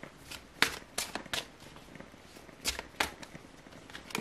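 A deck of tarot cards being shuffled by hand: a series of short, sharp snaps and slaps of the cards, loudest about half a second in and again near three seconds.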